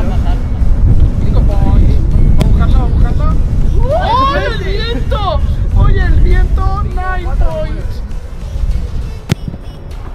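Wind buffeting the microphone in a steady low rumble under music and voices, then one sharp thud of a ball being kicked near the end.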